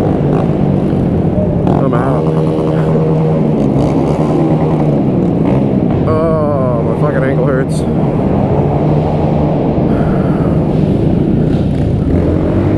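Honda Grom 125 cc single-cylinder motorcycle engines running hard around a tight track, their pitch rising and falling as the riders accelerate out of turns and back off into them.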